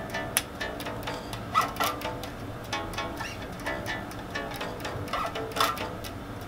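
Electric bass guitar, plucked with the fingers, playing a line of root notes with a few extra passing notes. It sits over an indie rock backing track of live-recorded drums, whose short, sharp hits recur throughout, and guitar chords.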